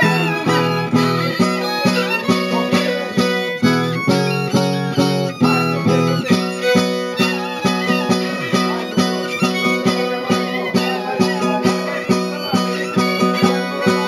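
Traditional Oaș music: a ceteră (fiddle) playing a high melody over a zongură (strummed guitar) beating out a steady dance rhythm, with a chord change about six seconds in.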